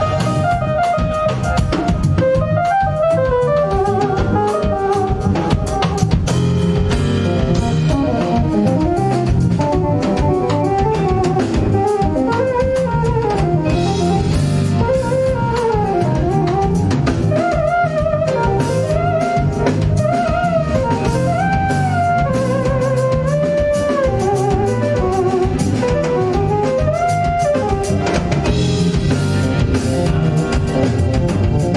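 Live band playing an instrumental jazz tune: a keytar plays a lead melody with gliding pitch bends over electric bass and a drum kit.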